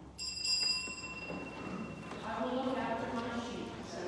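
A small bell struck once, ringing with several high tones that fade away over about two seconds, followed by a voice.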